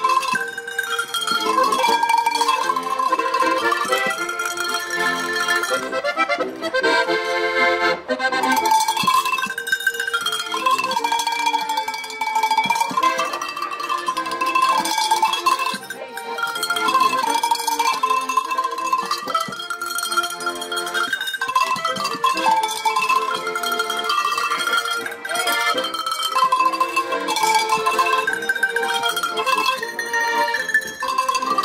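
A melody played on a set of tuned cowbells, each bell lifted and shaken in turn to ring its note, accompanied by a button accordion. The music runs continuously.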